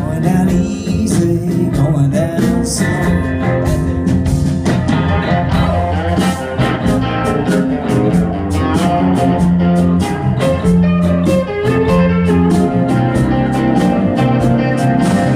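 Live band playing an instrumental break in a blues-tinged Americana song: electric guitar, bass and a steady drum beat, with pedal steel guitar and harmonica in the band.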